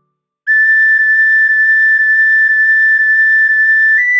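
Recorder playing one high note repeated as eight separately tongued notes, about two a second. They start about half a second in after a brief silence, and the line steps up to a higher note right at the end.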